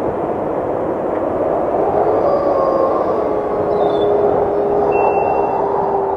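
Dark trailer sound-design drone: a loud, dense rumble with a single steady held tone coming in about two seconds in.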